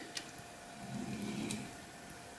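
Faint handling sounds as a small die-cast toy car is set down on a table by hand: a light click just after the start, then a soft low rustle around the middle.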